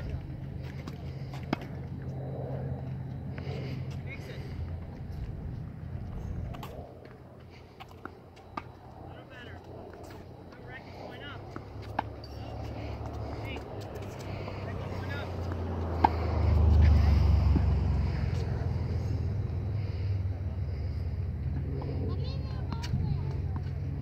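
Tennis balls hit by a racket and bouncing on a hard court: single sharp knocks every few seconds, over a low steady rumble that swells about two-thirds of the way through.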